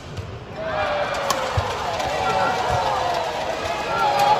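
Arena crowd voices swelling about half a second in and carrying on through a badminton rally, with sharp cracks of racket strikes on the shuttlecock over them.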